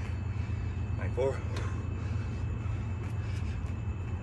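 A man's short vocal sound about a second in, the voice of someone doing burpees, falling into the rhythm of his rep count, over a steady low hum.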